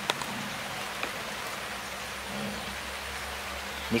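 Steady background hiss, with a sharp click right at the start and a fainter one about a second in.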